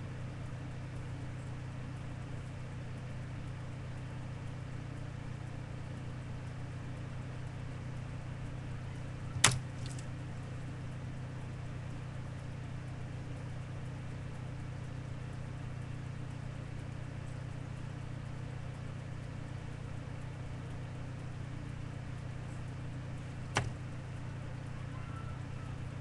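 A steady low hum, broken by two sharp clicks: a loud one about nine seconds in and a softer one near the end.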